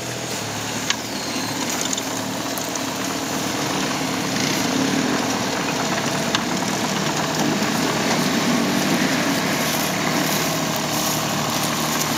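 Takeuchi TB125 mini excavator's diesel engine running steadily while the boom and bucket are worked, its hum growing a little louder about two seconds in. A short click comes about a second in.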